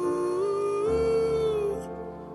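Male singer holding a long sung "ooh" that lifts in pitch about half a second in and fades out near the end, over soft piano accompaniment, with a low chord coming in about a second in.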